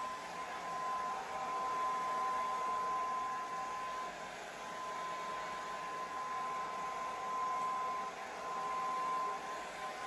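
Handheld hair dryer running steadily, a rushing blow of air with a constant high whine from its motor. The sound swells and dips as the dryer is moved around the head.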